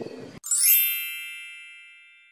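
A single bright, bell-like ding, an edited-in chime sound effect, strikes about half a second in and rings out, fading away slowly. Just before it, faint outdoor ambience cuts off abruptly.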